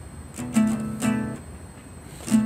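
Nylon-string classical guitar strummed twice, about half a second apart, each chord ringing briefly before dying away. It is played by a beginner in his first guitar lesson.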